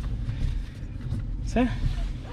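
Chevrolet pickup running, heard inside the cab as a low, steady rumble.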